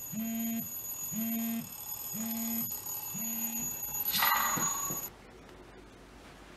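Mobile phone alerting to an incoming message: a low buzz that pulses about once a second, four times, followed by a short louder sound just after four seconds in.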